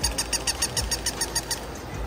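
Battery-powered walking toy puppies on a store display, their motors and legs clicking in a quick even rhythm, about five clicks a second, stopping shortly before the end.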